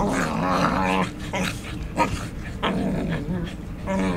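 English Cocker Spaniels growling as they play-fight, in drawn-out low growls, one at the start and another about three seconds in. About two seconds in there is one short, sharp sound.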